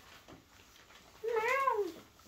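A single short meow-like call that rises and then falls in pitch, about a second in.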